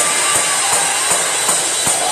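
Live church praise music, loud, driven by a drum kit keeping a steady beat of about two and a half hits a second.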